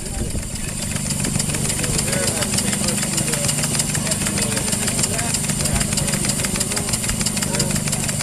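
Small model steam engine on a steam dragline running with a rapid, even beat of exhaust chuffs and valve clicks.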